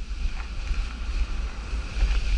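Wind buffeting the microphone of a camera moving fast down a ski slope, a gusty low rumble, with a steady hiss of snow scraping under sliding boards.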